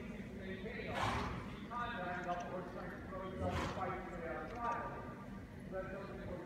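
Indistinct talking, with two short rushing noise bursts, one about a second in and another just past halfway.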